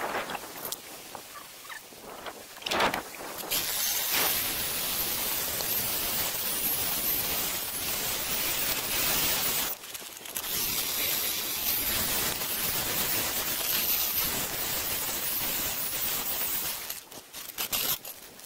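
Husqvarna DM220 electric core drill running, its diamond core bit grinding into sandstone and granite wall, starting about three and a half seconds in and stopping near the end, with a brief break about ten seconds in. A few knocks of the rig come before it starts.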